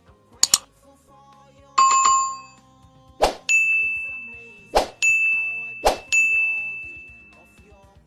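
Sound effects for an animated subscribe button: a quick double mouse click, then a bell ding, then three short pops, each followed by a bright ringing chime that fades out.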